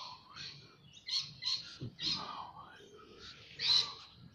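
Birds chirping and calling in short, sharp, repeated calls, the loudest coming near the end.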